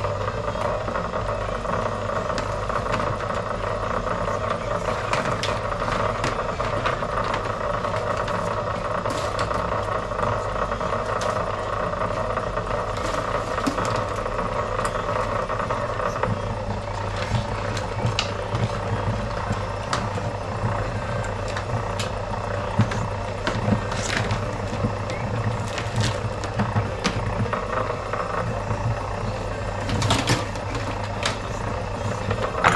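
Electric wire stripping machine's motor humming steadily, a higher running note cutting out about halfway, with scattered clicks and rattles of copper wire being handled.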